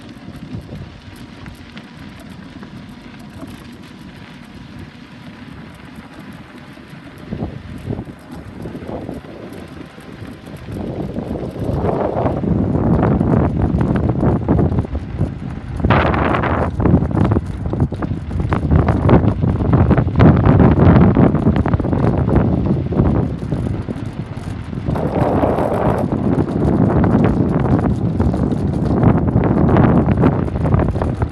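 Strong wind buffeting the phone's microphone. A quieter steady rumble for the first ten seconds or so, then loud, gusty rushing and crackling that comes and goes in surges.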